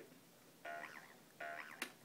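Talking toy farm barn playing three short, identical warbling sounds through its small speaker, with a sharp click just before the third, as it moves on to its next question.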